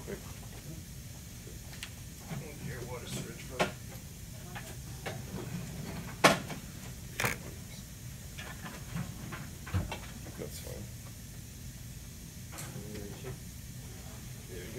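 Room background with a steady low hum and faint voices, broken by several sharp clicks or knocks of handling, the loudest about six seconds in.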